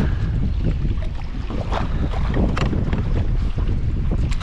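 Wind buffeting an action camera's microphone on open water, a steady low rumble, with a few short splashes of water against a kayak around the middle.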